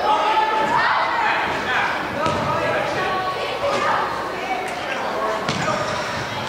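Players and spectators calling out in a large indoor soccer arena, with several sharp thuds of the soccer ball being struck scattered through the shouting.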